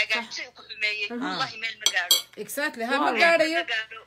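A person talking in short phrases, broken about two seconds in by a few sharp clinks.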